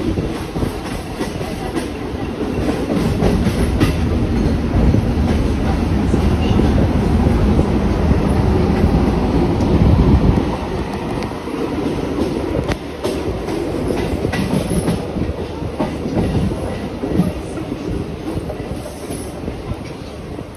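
Mumbai suburban local train (an electric multiple unit) running along the track, heard from the open doorway of a coach. The wheels give a steady rumble with occasional sharp clicks over rail joints and points, growing louder up to about ten seconds in and easing off after that.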